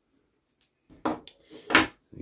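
Two brief knocks of handling noise, about a second in and again near the end, the second the louder, as hands move around the bonsai and the tools on the bench.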